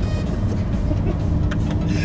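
Lamborghini Huracán's V10 engine running steadily at low road speed, heard from inside the cabin, with music mixed over it.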